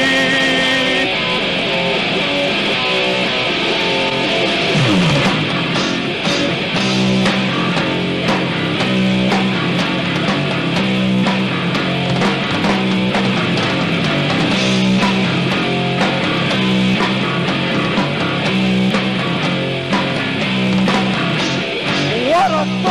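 A deathgrind band playing live, led by heavily distorted electric guitar riffing, captured on a raw bootleg tape. A held note at the start breaks off about a second in, and a repeating low riff carries on through the rest.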